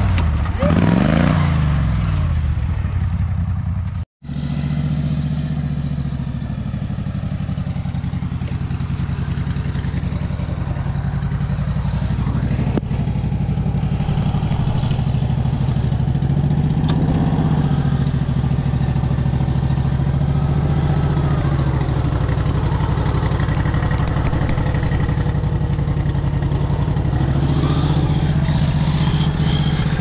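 Small engine of a modified garden tractor revving, its pitch rising and falling as the tractor climbs a rock ledge; the sound cuts out abruptly about four seconds in. Then a second garden tractor's engine runs at a steady speed, with brief rises in revs about halfway through and again near the end.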